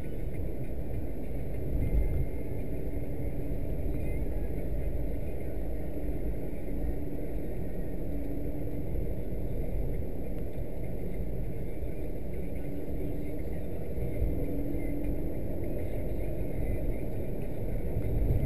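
Steady road and engine noise heard from inside a moving car's cabin, mostly low-pitched, with a faint engine hum coming and going.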